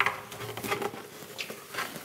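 The wooden upper front panel of an upright piano being lifted off and handled: a few light knocks and taps, the loudest right at the start.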